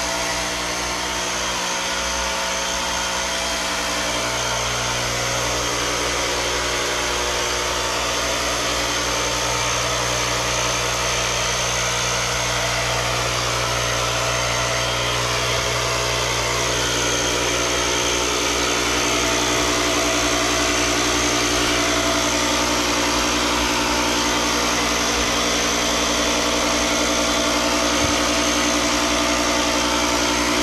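Ryobi 18V cordless fogger's battery-powered motor running steadily while it sprays a mist: a continuous, even machine hum made of several steady pitched tones.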